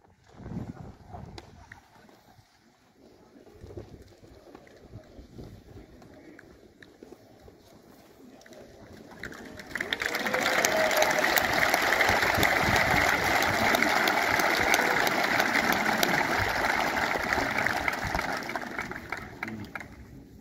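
Fairly quiet for the first half, then a large seated audience applauds: a dense spread of claps swells in about halfway through, holds steady, and dies away just before the end.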